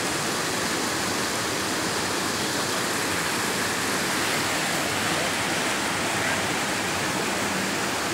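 Steady rushing of a shallow, fast-flowing river over stones.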